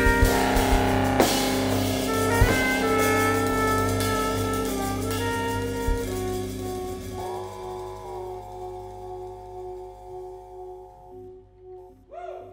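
Live semi-improvised jazz-rock band of saxophones, electric bass, keyboard and drums. Held horn notes step in pitch over drum and cymbal hits, then the music thins out and fades toward quiet over the second half.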